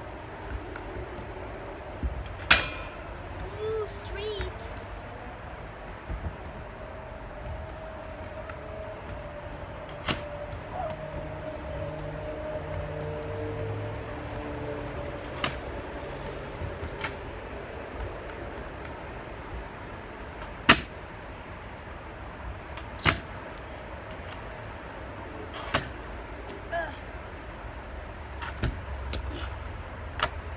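Stunt scooter clacking on a concrete patio: scattered sharp impacts of wheels, deck and bar, the loudest about two seconds in and about two-thirds of the way through, over steady outdoor background noise.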